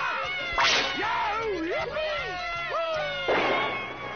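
Cartoon soundtrack: excited cartoon crowd voices with a sharp whip-like swish about half a second in. Near the end comes a longer rush of noise.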